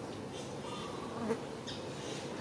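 Insects buzzing in a steady hum, with a few faint high chirps.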